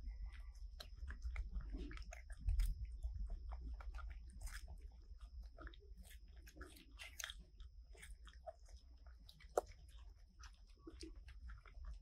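Two baby macaques chewing and biting soft ripe jackfruit close to the microphone: irregular small clicks and smacks from their mouths, with a couple of louder knocks.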